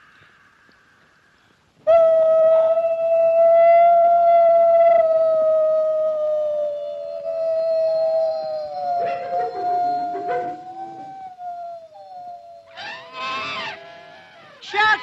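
A long, high howl starts suddenly about two seconds in and is held for roughly ten seconds. A second howl overlaps it in its latter half. Near the end a man gives short, loud cries.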